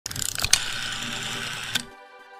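Rotary telephone dial: a few clicks as it is turned, then a steady whirr for just over a second as it spins back, ending with a click.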